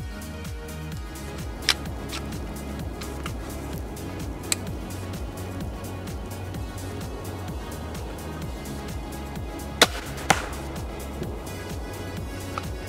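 Background music with a steady beat, with a couple of sharp clicks early on. Nearly ten seconds in, a sharp crack of a TenPoint compound crossbow firing, then half a second later a second sharp smack, the bolt striking the target; the shot itself is fairly quiet.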